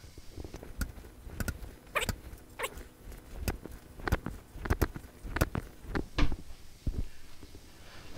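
Irregular light taps and knocks of hands nudging a large wooden bowl on a lathe's vacuum chuck to realign it, with some brushing of hands on the wood.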